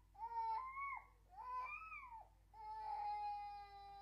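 An infant crying: three high wails, the first two rising and falling, the last one long and held steady.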